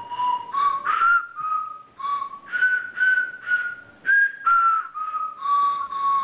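A simple tune played note by note on a set of small tuned whistles, each person blowing their own single pitch in turn: about a dozen short, breathy whistle notes stepping up and down.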